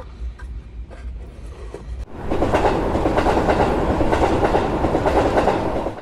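Faint clicks of a model freight car being set into its cardboard box. About two seconds in, a loud, steady rushing clatter of a train running on rails starts suddenly and keeps going.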